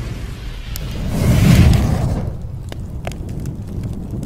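Logo-intro sound effect: a low, rumbling boom that swells to its loudest about a second and a half in and then fades, with a few sharp clicks scattered through it.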